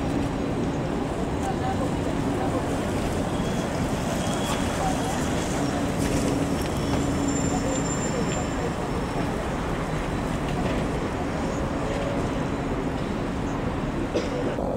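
Steady street and traffic noise as a red trolleybus drives round the terminus loop and away, with a faint high whine briefly about halfway through.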